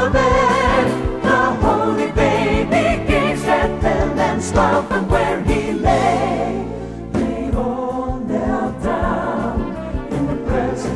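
A choir singing a Christmas song with instrumental accompaniment. A held chord thins out just before seven seconds in, and a new sung phrase begins.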